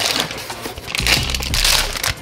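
Crinkling of a foil anti-static bag as a hard drive is unwrapped and pulled out of it, louder in the second half.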